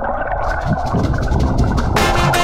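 Muffled underwater water noise picked up by a camera in its waterproof housing: a steady dull rushing with irregular low gurgles.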